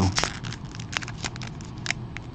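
Plastic wrapper of a Topps baseball card pack being peeled open at its crimped seal by hand: irregular crinkling and crackling with a few sharp clicks.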